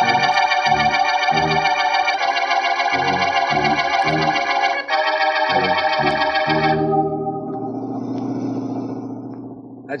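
Organ music bridge between scenes: loud held chords over a pulsing bass, changing chord twice, then settling into a low steady drone that fades out near the end.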